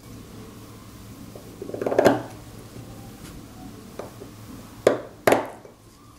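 Steel seal-carving knife cutting into a stone seal: a gritty scraping stroke about two seconds in, then two sharp clicks of the blade on the stone near the end.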